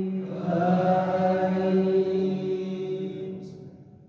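Imam's melodic Quran recitation (tarteel) in a male voice through the mosque's microphone: a drawn-out phrase on a long held note that fades out about three seconds in.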